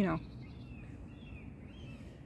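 Outdoor ambience: a steady low rumble with a few faint, short bird chirps scattered through it.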